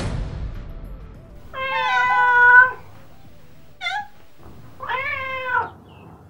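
A sudden crash-like hit, then a domestic cat meowing three times: one long meow about a second and a half in, a short one near four seconds, and another about five seconds in.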